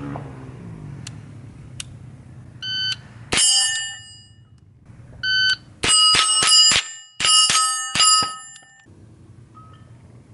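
Rapid .22 LR shots from an AR-15 fitted with a CMMG .22 conversion kit, with AR500 steel plates ringing with a bell-like ping on the hits. A few single shots come in the first half, then two quick strings of about four shots each near the end.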